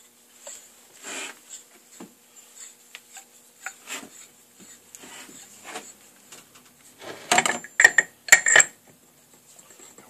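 Steel balancing arbor being handled and slid into a motorcycle flywheel's hub: light scrapes and taps, then a burst of sharp metal-on-metal clinks and clanks after about seven seconds.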